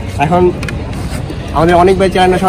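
A man's voice in two short phrases over the steady low hum of street traffic.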